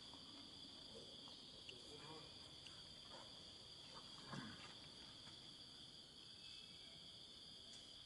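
Faint, steady insect chorus, a high two-toned drone that carries on unbroken. A brief, faint sound rises above it about four seconds in.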